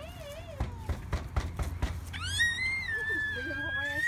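A toddler's long, high-pitched scream, starting about halfway and held for about two seconds. Before it, a short wavering voice and a few sharp knocks.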